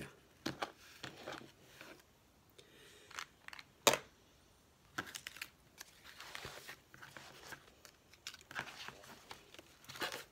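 Light handling sounds of paper-crafting: small craft supplies and an embellishment being picked up and set down with scattered clicks and taps, and journal pages rustling. One sharp click about four seconds in is the loudest.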